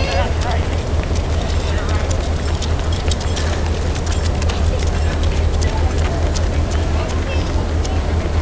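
Footsteps of many runners on street pavement: a stream of quick, irregular taps, over a steady low rumble and faint voices.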